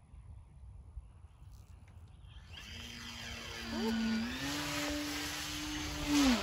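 An RC plane's 2216 brushless motor on 4S, spinning a 10x7 propeller, whines in flight as it comes closer and gets louder. The pitch steps up about four seconds in and drops near the end.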